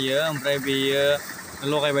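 A man's voice speaking in a local language, holding some vowels long.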